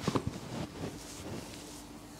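Paper neck tissue crinkling as it is tucked in around a collar: several short rustles in the first second, loudest at the very start, then quieter handling.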